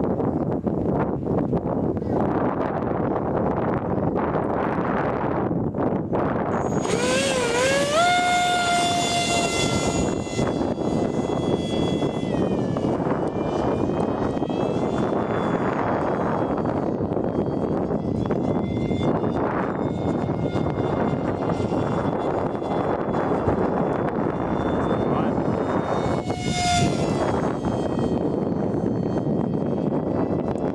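Electric ducted fan of a 50mm mini F-18 RC jet, heard as a high whine with overtones that appears about seven seconds in, slides up and wavers in pitch as the jet flies past, fades, and comes back briefly near the end. A steady rushing noise sits under it throughout.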